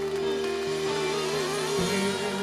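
A male singer holds one long note with vibrato over a soft live-band backing of sustained chords. The bass changes chord near the end.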